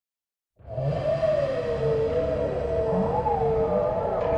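Silence for about half a second, then a science-fiction TV soundtrack drone cuts in suddenly: two wavering tones slowly gliding up and down over a low rumble.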